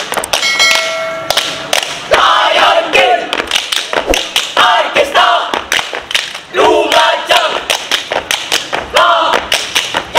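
A troop of boy scouts chanting and singing together in a yel-yel routine, with a fast run of rhythmic stomps and claps under the voices. A short steady tone sounds for about a second near the start.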